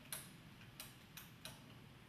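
Near silence in a room, broken by about four faint, sharp clicks at uneven intervals, the first just after the start the strongest.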